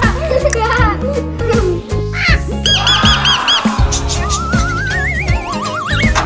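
Upbeat background music with a steady bass beat, overlaid with cartoon-style sound effects: a quick run of arching chirps about halfway through, then a rising, wavering tone near the end.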